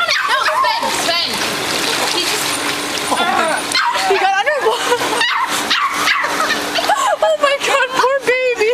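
A small wet puppy yipping and whimpering as it is lifted out of a swimming pool and handed over, amid people's voices.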